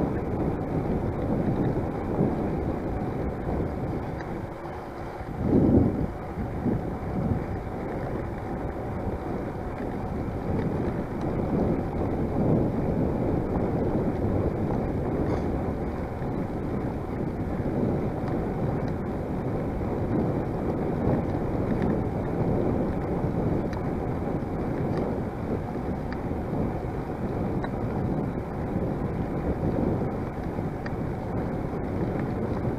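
Wind rushing over the microphone of a camera on a moving bicycle, a steady low rumble with one louder gust about five or six seconds in.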